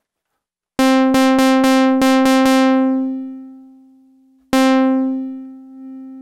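A synthesizer note at one pitch, rich in overtones, played through the Trogotronic m/277 tube VCA. It is struck seven times in quick succession about a second in, then fades away over a couple of seconds. It is struck once more near the end and dies down to a quieter held tone.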